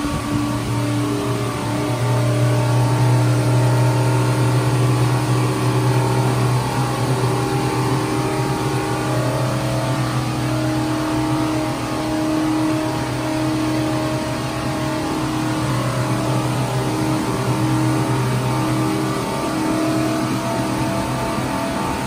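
Twin inboard marine engines of a cruiser running at wide open throttle, heard through the open engine hatch: a loud, steady, deep drone with a layered hum above it that wavers slightly as the boat holds full speed.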